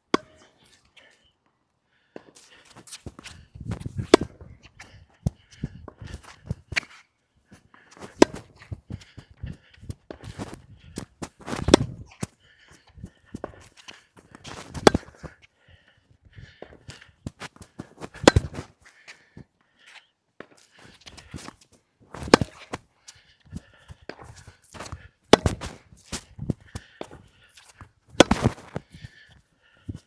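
Tennis rally: a ball struck by racquets with sharp pops about every three to four seconds, and fainter knocks of ball bounces and shoe steps on the hard court in between.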